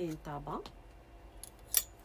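A brief vocal sound, then a single sharp click with a short high ring near the end.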